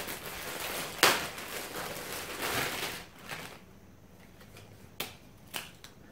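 Clear plastic clothing bag crinkling and rustling as it is handled and opened and a T-shirt is pulled out. It is loudest in the first three seconds, with a sharp crackle about a second in, then goes quieter with two short ticks near the end.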